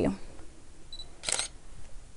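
Canon DSLR taking a picture: a short high autofocus-confirmation beep about halfway through, then the quick clack of the shutter and mirror about a third of a second later.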